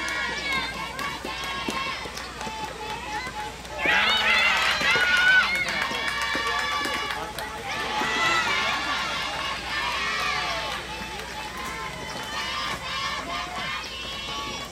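Many high girls' voices shouting cheers together at a soft tennis match, loudest in two long stretches, from about four to seven seconds and from eight to ten and a half seconds in. Sharp pocks of rubber soft tennis balls being struck come in between.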